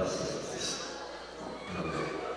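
Voices of a church congregation praying aloud at once, overlapping so that no single speaker stands out, with a louder burst of voice at the start.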